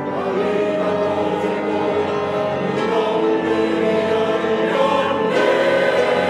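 Mixed church choir singing a cantata in Korean, holding sustained chords that grow slightly louder through the passage.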